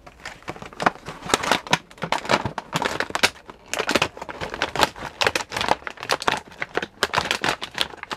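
Clear plastic packaging crinkling and crackling in the hands as it is handled, in many short, irregular crackles.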